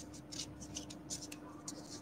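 Faint, irregular scratching on paper, a string of short scratchy strokes over a steady low hum.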